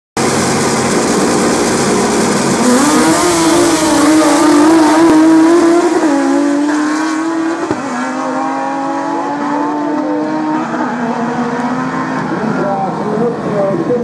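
Drag racing cars launching from the line and accelerating hard down a quarter-mile strip, the engines revving high. The engine note climbs for a few seconds, then drops sharply about six and eight seconds in as the cars shift up.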